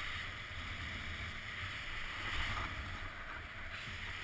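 Steady hiss of snow sliding under a rider descending a groomed ski run, with wind rumbling on the helmet-mounted microphone.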